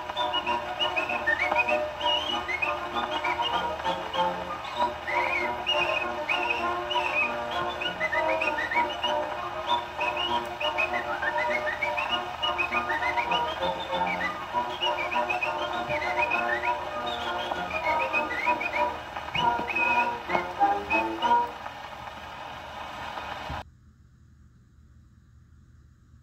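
Acoustic gramophone playing an early shellac disc record: quick, chirpy whistling over a small orchestra accompaniment. It grows quieter and then cuts off abruptly shortly before the end.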